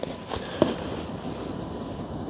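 A few light clicks as the diagnostic cable's plastic connector is pushed home in the car's OBD port, over a steady background hiss.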